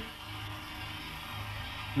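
Steady low hum with an even hiss underneath, and no distinct event. This is the background of the 1942 broadcast recording, with the recording room's machinery behind it.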